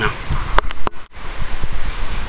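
Knocks and a low rumble as the two halves of a Craftsman snowblower are tipped apart on their pivot bolts, with two sharp metal knocks about half a second and just under a second in.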